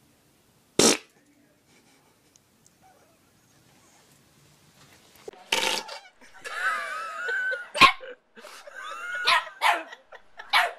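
A single short, loud fart about a second in. From about halfway there is another sudden burst, and then a small dog barks and whines in high, wavering calls that rise and fall.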